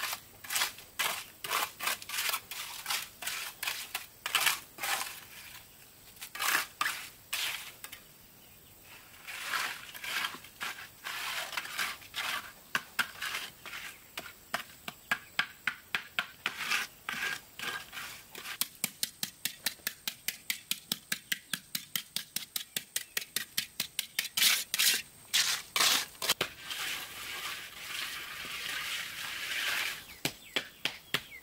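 Steel hand trowel scraping and smoothing wet concrete around a brick stove base, in short, sharp strokes that come several a second in a fast even run past the middle, with a longer gritty scraping near the end.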